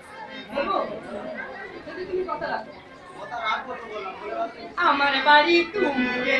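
People talking amid crowd chatter, with a louder voice starting about five seconds in.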